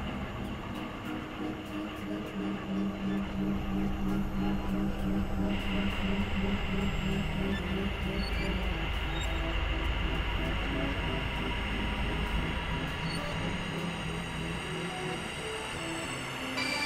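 Dense, steady experimental synthesizer drone and noise, with held low tones. A brighter high layer comes in about five seconds in, and the low end swells in the middle.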